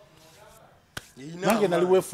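A short pause, then a single sharp click about a second in, followed by a man speaking.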